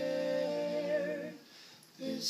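A woman's solo singing voice holds one long note that ends about a second and a half in, leaving a short quiet gap before the next phrase.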